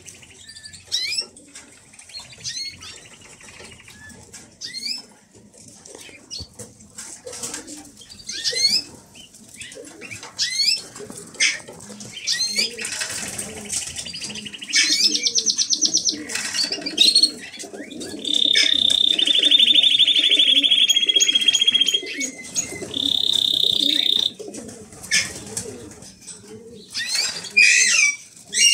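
Caged canaries and goldfinches singing: many quick chirps and whistled notes throughout, with fast rolling trills in the second half, the loudest held for about three seconds.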